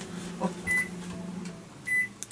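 Microwave oven's control panel beeping as its buttons are pressed: two short high beeps about a second apart, after a light knock. A steady low hum underneath stops about one and a half seconds in.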